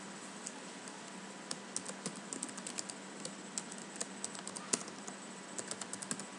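Quiet computer keyboard typing: a quick run of irregular key clicks begins about a second and a half in as a word is typed, over faint steady hum and hiss.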